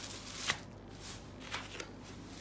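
Rustling of a folded chiffon saree being lifted and opened out by hand, with three short crisp snaps of the fabric: one about half a second in and two close together past halfway.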